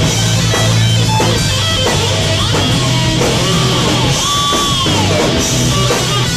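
Live heavy metal band: electric guitar over drums and bass. About four seconds in, a guitar note is held and then slides down in pitch about a second later.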